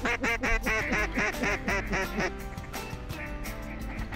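Mallard-type duck quacking: a fast run of about a dozen quacks lasting a little over two seconds, each quack dropping in pitch. Background music plays underneath.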